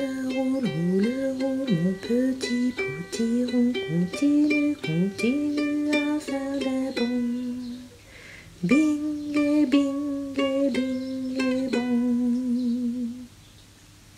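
A short song: a voice carries a melody with sliding notes over plucked-string accompaniment like a ukulele. It runs in two phrases with a brief break about eight seconds in and stops shortly before the end.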